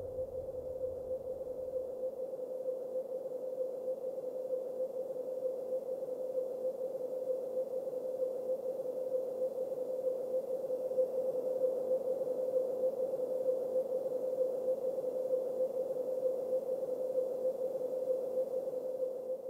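A steady mid-pitched electronic drone tone, holding one pitch without change, with a faint hiss around it.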